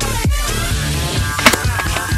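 Background music: an electronic dance track with a steady kick-drum beat gives way to a rock track, with a single sharp crack about one and a half seconds in.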